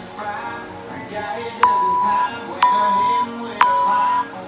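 Gym interval timer sounding its last countdown beeps: three identical beeps, one a second, starting about one and a half seconds in, over background music.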